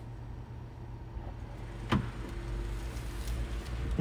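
Steady low hum inside a parked car's cabin, with a single sharp click about two seconds in.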